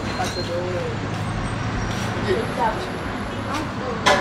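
Soft, intermittent talking over a steady low background hum.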